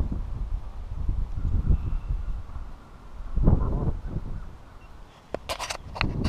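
Low rumbling water and handling noise on the GoPro's own microphone as the camera, used as a fishing float, is reeled in beside the canoe and picked up. There is a louder burst about halfway through and a few sharp clicks near the end as the housing is grabbed.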